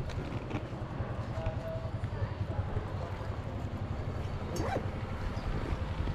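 Steady low rumble of outdoor background noise on a handheld microphone, with a brief faint call about four and a half seconds in.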